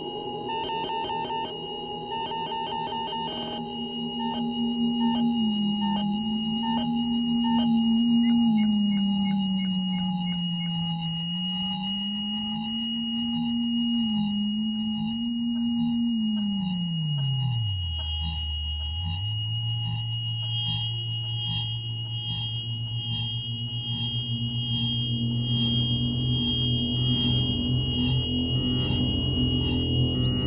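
Electronic music made from audio feedback (Larsen effect) whistles and their modulations: steady high whistling tones over a lower tone that slides up and down, with evenly spaced ticks. A little past halfway the low tone falls steeply, then settles into a steady low drone as a noisy wash builds.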